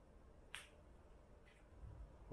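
Near silence with a short sharp click about half a second in and a fainter click about a second later.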